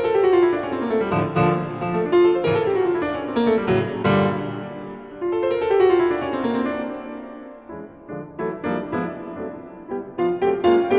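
Grand piano playing a solo contemporary classical piece: flowing figures that fall in pitch again and again, thinning out briefly near the eighth second before short, struck notes pick up again.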